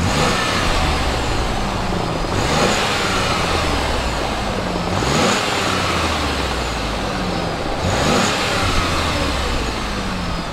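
2019 Chevrolet Blazer RS's 3.6-litre V6 idling and revved three times, each blip rising in pitch and then settling back to idle, heard from behind at the exhaust.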